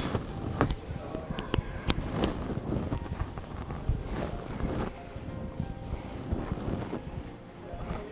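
Clip-on microphone rubbing against a cotton T-shirt as the shoulders circle: an uneven rustling rumble with a few sharp clicks in the first couple of seconds, under steady breathing.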